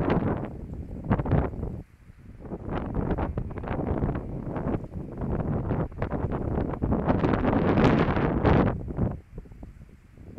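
Strong gusty wind buffeting the phone's microphone, rumbling in uneven gusts, with a short lull about two seconds in and the heaviest gusts near the end before it drops away.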